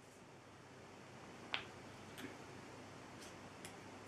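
Mostly quiet room tone with a few faint clicks from a small plastic cosmetic container being handled, the sharpest about one and a half seconds in.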